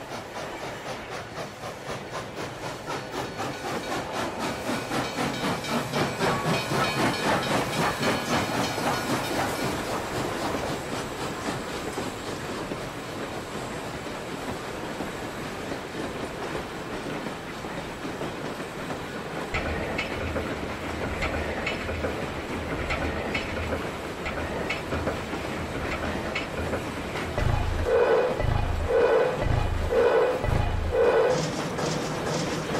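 A train running on rails, its wheels clacking quickly and evenly over the rail joints, growing louder over the first several seconds and then fading away. In the last part a low rumble sets in, then slow heavy pulses about once a second.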